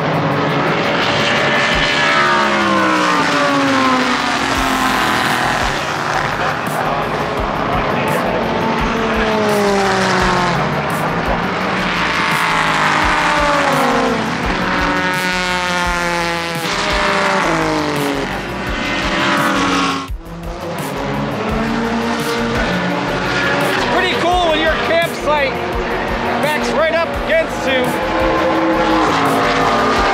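IMSA endurance race cars (a mixed prototype and GT field) passing one after another, each engine rising and falling in pitch as it goes by and shifts gear. The sound breaks off abruptly about two-thirds of the way through, then more cars pass.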